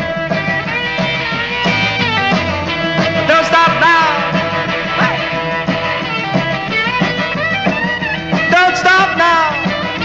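Instrumental break of an early-1960s rock and roll song: the band plays over a steady bass-and-drum beat while a lead instrument bends and slides its notes, around four seconds in and again near the end.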